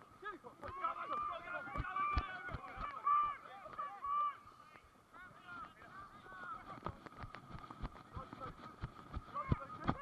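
A flock of geese honking, many short calls overlapping throughout, with scattered knocks and thuds close to the microphone.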